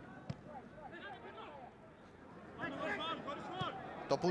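Football match ambience: faint voices shouting around the pitch, with one sharp knock near the start, typical of a ball being kicked.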